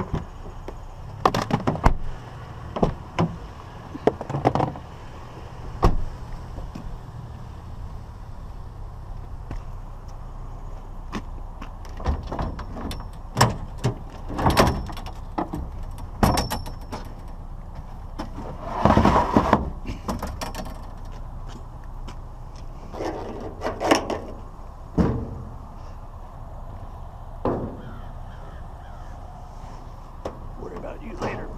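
Irregular clunks, knocks and rattles from a pickup truck's door and bed, and the scrap in it, being handled. One longer rattling noise comes a little past the middle.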